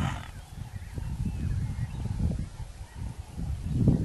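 Repeated low, rough animal calls that come and go in short bursts, loudest near the end.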